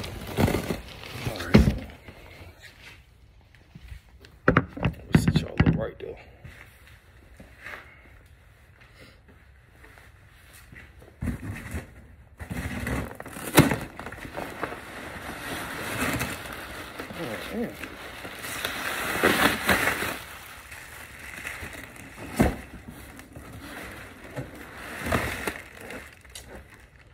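Cardboard box being torn open by hand: scattered rips and knocks of tape and cardboard, with a longer spell of rustling and tearing in the second half as the packing is pulled about.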